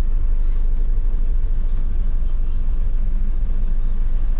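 Steady low engine and road rumble heard inside the cab of a vehicle creeping along in traffic.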